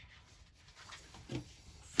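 Cloth roll-up pouch of screwdrivers being unrolled and laid flat on a wooden table: soft rustling and rubbing that builds after the first half-second.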